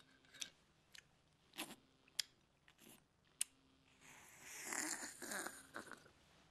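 Light clinks and taps of a glass bottle and glassware on a bar counter. From about four seconds in comes a louder gulping sound lasting about two seconds as a drink is downed from a glass.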